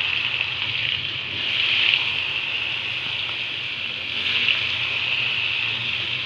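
Tempe pieces deep-frying in a wok of hot oil, a steady sizzle just after they go in.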